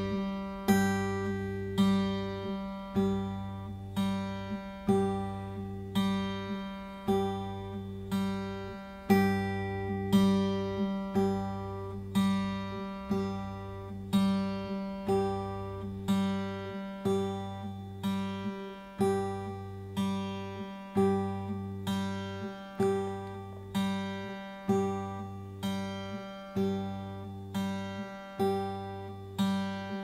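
Steel-string acoustic guitar played fingerstyle over a held G chord: a thumb-and-middle-finger pinch on the low and high E strings, followed by single notes on the open G string. The pattern repeats at an even, slow tempo, about one pinch a second.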